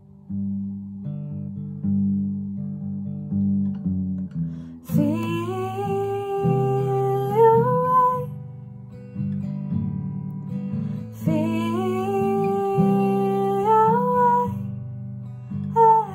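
Gibson acoustic guitar played alone for about five seconds, then a woman's wordless singing, gliding upward in pitch, comes in twice over it, each phrase lasting about three seconds.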